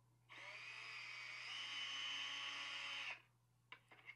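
Cordless DeWalt 12V drill/driver with a nut setter socket spinning out a door-panel bolt: a steady motor whine of about three seconds that rises a little in pitch halfway through, then stops.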